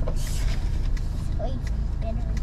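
Car engine idling, heard from inside the cabin as a steady low rumble, with a short rustle near the start and a few small clicks and knocks.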